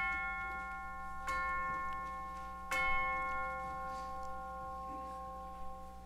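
Church chimes struck three times, about a second and a half apart, each note ringing on and slowly fading.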